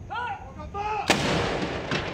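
A ceremonial saluting gun firing one blank round of a gun salute, a sharp report about a second in that fades out slowly, with a second, weaker crack near the end. A short voice call comes just before the shot.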